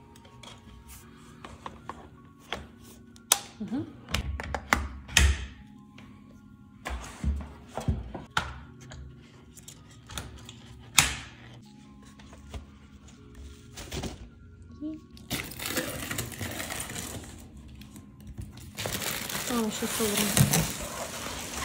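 Clicks and knocks of plastic and metal stroller parts as the wheels are fitted onto the frame. Plastic packaging rustles from about three-quarters of the way through, louder near the end.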